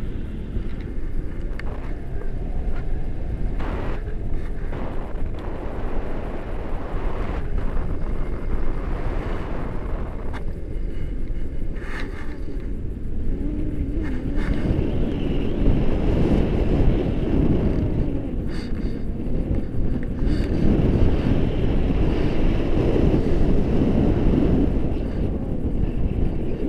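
Airflow rushing over the microphone in paraglider flight: a steady low rumble of wind noise that grows louder and more gusty about halfway through.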